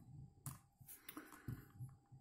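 A few faint plastic clicks as a Rubik's cube is handled and its layers are turned, about half a second in and twice more near the end.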